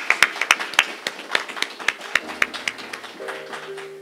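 A room of people applauding, many hands clapping, the claps thinning and fading out over about three seconds. Near the end a soft, held musical chord comes in.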